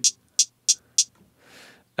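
A hi-hat sample triggered from the pads of an Akai MPC One: four short, crisp hits about three a second, followed by a fainter, longer hiss about a second and a half in.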